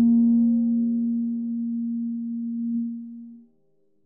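The final held note of a lo-fi jazz hip-hop track: one sustained keyboard tone that slowly fades and dies away about three and a half seconds in, leaving silence.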